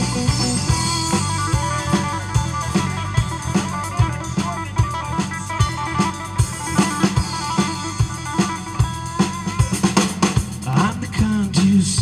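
Live blues-rock band playing an instrumental break: an electric guitar plays lead lines with bent notes over bass guitar and a drum kit keeping a steady beat. The singing comes back in near the end.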